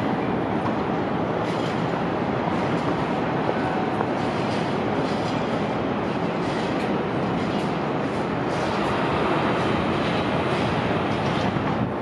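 Steady, even roar of downtown city noise, a dense rumble with no single event standing out.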